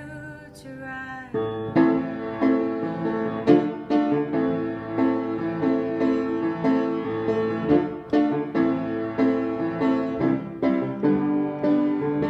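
Piano chords played on a keyboard in a steady, evenly repeated rhythm. They come in strongly about a second in, after a quieter held note fades.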